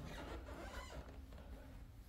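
Faint rustling and soft footsteps on carpet, low and without any distinct event.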